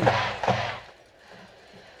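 The end of a man's penalty announcement over the stadium public-address system, echoing and fading out about a second in, followed by faint crowd noise.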